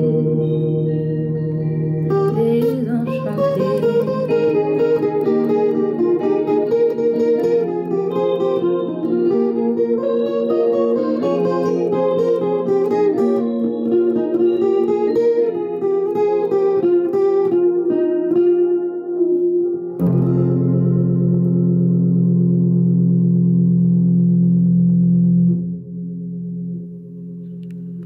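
Steel-string guitar with a capo playing a melody of picked notes over low notes that keep ringing. About twenty seconds in, it switches suddenly to one sustained chord, which drops away about five seconds later and fades out.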